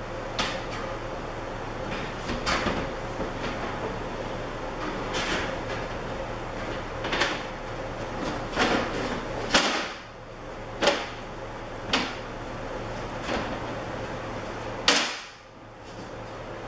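Laminated shelf boards being set onto the steel beams of a storage rack: about ten irregular knocks of board against metal frame, the loudest about ten seconds in and near the end.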